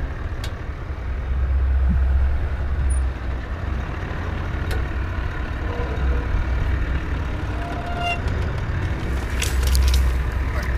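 Four-wheel drive's turbo-diesel engine running at low revs as the vehicle crawls along a soft sand track, a steady low rumble with tyre and wind noise over it. A few sharp clicks or scrapes come near the end.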